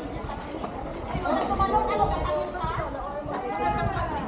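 Several voices, children's among them, talking and calling out over one another, with a low rumble underneath.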